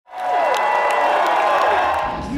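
A crowd cheering and shouting, many voices whooping at once, starting suddenly.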